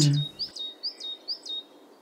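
A small bird calling in a run of short, high, thin chirps, about two a second, each sweeping up and then settling onto a brief held note; the calls stop shortly before the end.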